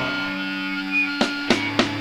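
Live punk band between songs: an electric guitar's held notes ring on steadily, then about a second in three sharp, evenly spaced drum hits come in quick succession, counting the next song in.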